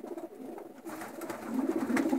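Racing pigeons cooing softly, low in pitch, a little louder near the end.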